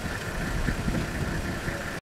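A motor vehicle's engine idling: a steady low, uneven rumble with a constant higher hum above it.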